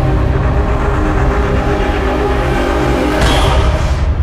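Dark cinematic logo-intro music: held tones over a deep low rumble, swelling brighter near the end.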